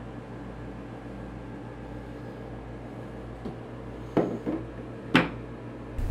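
Light handling knocks from computer parts being moved, a soft one about four seconds in and a sharper knock about five seconds in, over a low steady hum.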